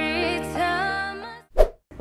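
A drawn-out, wavering sung note on "yêu" ("love"), with music under it, as a comic romantic sound effect. It fades away about a second and a half in and is followed by a short pop.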